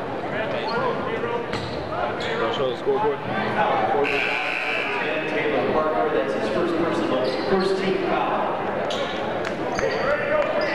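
Basketball bouncing on a hardwood gym floor under indistinct crowd chatter, echoing in a large gym.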